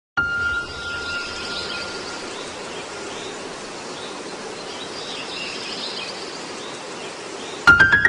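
Steady outdoor-style ambience with faint bird chirps, opening with one sustained high tone lasting about two seconds. Near the end a few sharp clicks are followed by the first notes of piano music.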